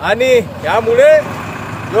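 A man's voice speaking loudly in short phrases, over a steady low background rumble.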